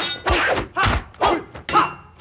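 Dubbed martial-arts fight blows: a rapid run of about five thwacks in two seconds, each with a short ringing tail, as a stick beating is staged.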